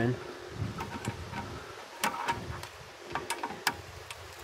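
Flathead screwdriver prying at the brake caliper's hardware, giving a scatter of short metallic clicks and scrapes, about seven in all.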